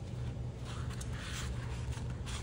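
Paper bills and a clear plastic cash envelope rustling as dollar bills are slid into the envelope, for about a second near the middle, over a steady low hum.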